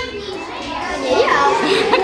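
Children's voices, several kids talking over one another.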